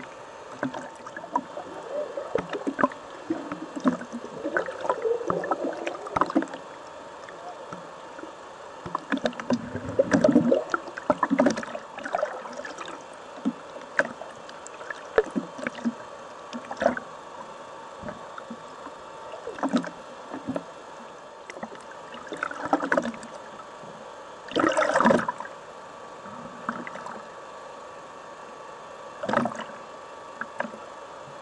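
Swimmers moving and kicking in the water, heard from below the surface by an underwater camera: irregular rushing and bubbling with small knocks, in louder bursts about a third of the way in and again toward the end, over a faint steady hum.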